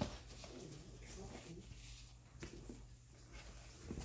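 Faint rustling of a fabric dust bag as a handbag is slid into it by gloved hands, with a brief soft knock at the start.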